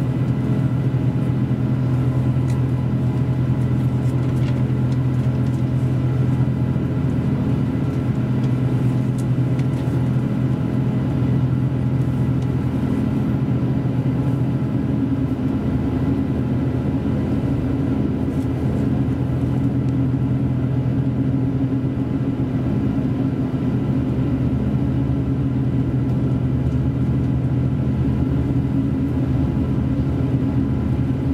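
Series 283 tilting diesel railcar (KiHa 283) in motion, heard from inside the passenger cabin: its diesel engine running with a steady low hum over a constant running rumble.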